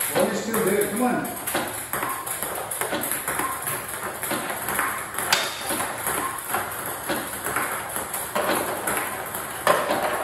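Table tennis balls clicking off the table and the paddles in a fast topspin return drill, a steady run of sharp ticks about two a second.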